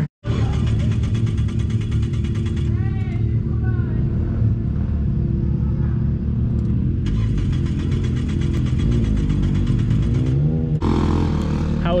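Car engine running steadily, with two longer stretches of rapid, even pulsing.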